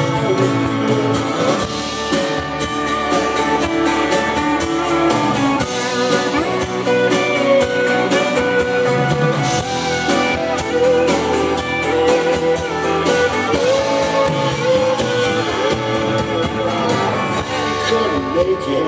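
Live rock band playing an instrumental passage with no vocals. Guitar leads over keyboards and drums keeping a steady beat.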